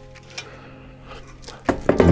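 Faint sizzling and crackling of hot fat on freshly air-fried chicken wings in the pulled-out basket.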